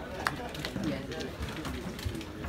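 Indistinct voices of several people talking and calling across an open sports field, with a sharp, brief snap about a quarter of a second in.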